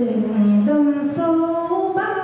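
A single voice singing a slow song in Vietnamese, holding long notes that step from one pitch to the next.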